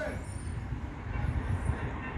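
Low, steady background rumble with no clear single event, of the kind made by distant traffic or wind on the microphone.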